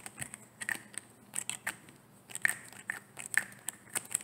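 Fingernails tapping and clicking on a plastic bottle: an irregular run of sharp, crisp clicks, about three or four a second.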